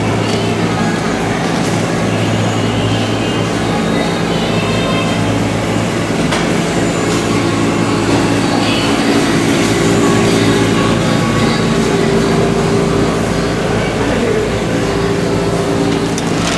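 Busy shop-floor ambience: a steady low mechanical hum, with shoppers' voices in the background.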